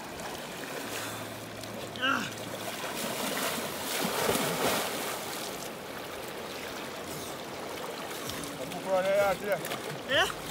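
Water splashing as a person swims and crawls through a shallow river, over the steady rush of the current, with the splashing loudest about four to five seconds in.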